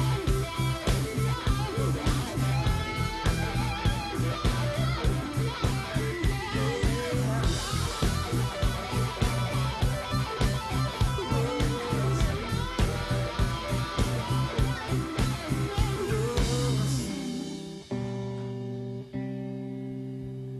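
Live rock band playing an instrumental passage: an electric guitar lead bending notes over bass and steady drums. About three seconds before the end the drums stop and the band holds a final chord that rings out.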